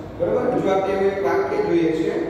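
A man speaking: only speech, with no other sound standing out.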